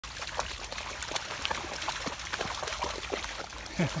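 Dogs splashing through shallow floodwater, a patter of many small, quick splashes and trickles, ending with a person's brief laugh.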